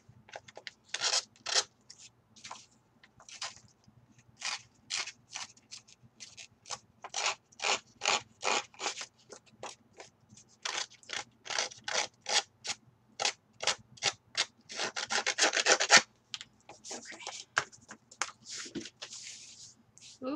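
Hands rubbing and rustling layered patterned paper and cardstock in many short, separate strokes, with a denser run of rubbing about three-quarters of the way through.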